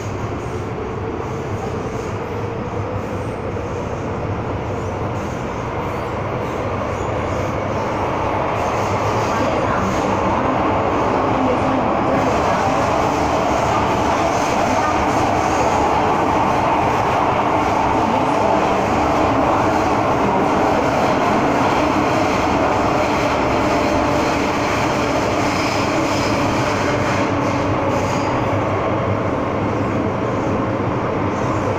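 Cabin noise of an MTR M-Train running on the Tsuen Wan Line: a steady rumble of wheels on track and traction motors. It grows louder over the first ten seconds or so, stays level, then eases slightly near the end.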